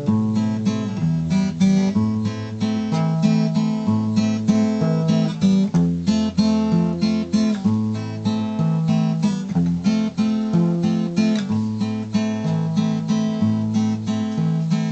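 Acoustic guitar strummed in a steady rhythm with changing bass notes: an instrumental break with no singing.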